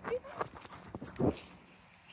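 A dog moving about while being handled on grass: a few soft knocks and scuffles, with one louder short, low sound about a second and a quarter in.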